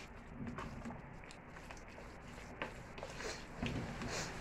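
A wooden spoon stirring a thick, wet mixture of shredded chicken, corn and tomato sauce in a large aluminium pot. Soft scraping with a few light knocks against the pot, clearest in the second half.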